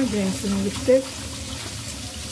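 Kitchen tap water running onto green peppers in a stainless steel colander as they are rinsed and turned by hand. A woman's voice speaks briefly over the first second.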